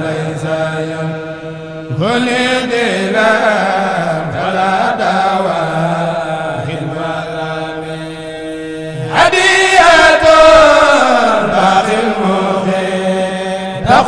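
Men chanting a Mouride khassida, an Arabic devotional poem, unaccompanied into microphones, with long held, wavering notes. A new, louder phrase begins about two seconds in and again about nine seconds in.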